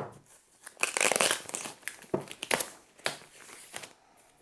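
Protective wrap on a rack-mount cable modem rustling and crinkling as it is handled and worked loose. It comes in irregular bursts, loudest about a second in, after a sharp knock at the very start.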